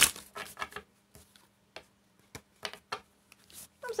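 A tarot deck being shuffled by hand: about ten irregular, crisp card clicks and flicks spread across a few seconds.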